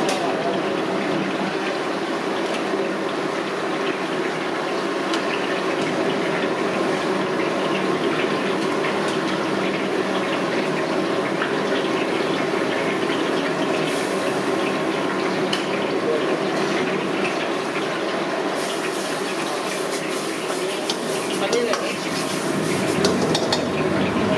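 Red gravy bubbling in a wok over a high gas flame, against steady kitchen noise. About fourteen seconds in, and again for a few seconds near the end, brighter sizzling and clatter as chicken pieces go in and the pan is worked.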